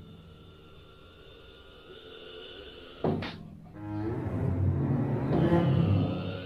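Symphony orchestra playing late twentieth-century music: quiet sustained notes, then a sudden sharp accented stroke about three seconds in, followed by a dense low swell that grows louder toward the end.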